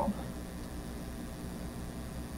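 Steady low background hum and hiss, with no distinct events.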